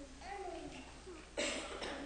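A person coughing in a large room: a loud cough about one and a half seconds in and a shorter one just before the end. A small child's voice babbles quietly before the coughs.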